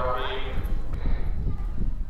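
Outdoor ambience with low rumble and scattered light knocks. A held singing voice fades out in the first half second.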